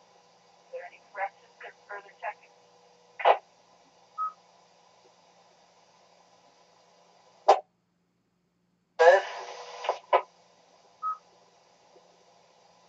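Two-way radio audio from an amateur radio net. A few brief, unclear voice fragments are followed by key-up clicks, a short burst of static and a short beep heard twice, which is typical of a repeater's courtesy tone. A faint steady hum runs underneath.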